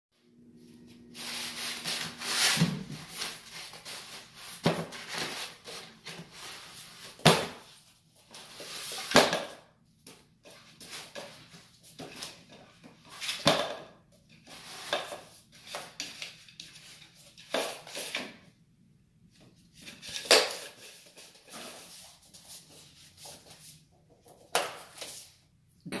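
Paper rustling and scraping in irregular bursts as a dog noses, chews and pushes a roll of brown builder's paper across a paper-covered floor.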